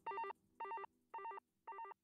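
A short electronic trill of a few bright tones, repeating about twice a second and growing steadily fainter like an echo tail. The low bass beneath it dies away about a second in.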